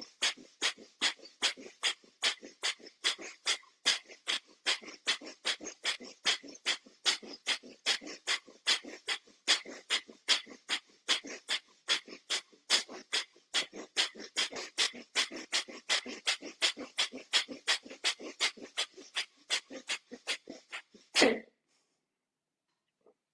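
Bhastrika pranayama (bellows breath): a man breathing forcefully in and out through the nose in a fast, even rhythm of about two to three strokes a second. It ends near the end with one longer, louder breath, then stops.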